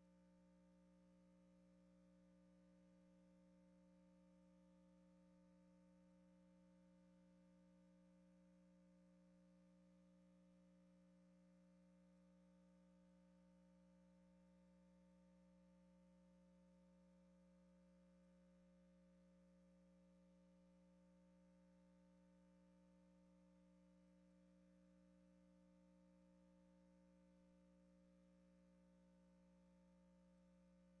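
Near silence: only a faint, steady hum made of a few constant tones, with no bird calls or other events.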